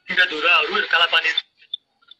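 Speech only: a man talking for about a second and a half, then a pause.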